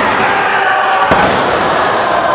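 A wrestler's body hitting the ring mat once, a sharp slam about a second in, over a steady murmur of crowd voices.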